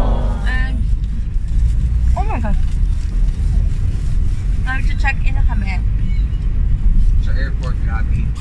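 Steady low rumble of a taxi running, heard from inside its cabin.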